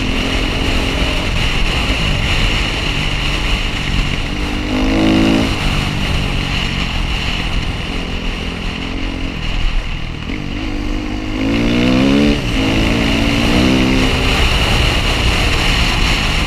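Dirt-bike engine running under way, picked up by a helmet-mounted camera. It revs up in rising sweeps about five seconds in and again around twelve seconds, over a steady low rumble.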